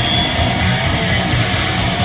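Live heavy metal band playing loud: distorted electric guitar riffing over a drum kit.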